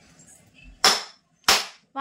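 Two loud, sharp cracks about two-thirds of a second apart, each dying away quickly.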